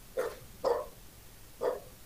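A dog barking three times in the background, short single barks spaced about half a second and then a second apart.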